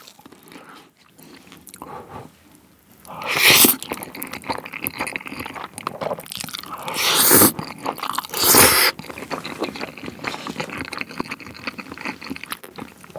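A person eating oven-baked cheese spaghetti close to the microphone: three loud slurps of noodles, about three and a half, seven and eight and a half seconds in, with chewing in between.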